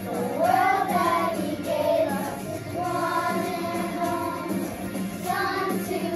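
A class of young schoolchildren singing a song together, with notes held about a second each and sliding from one pitch to the next.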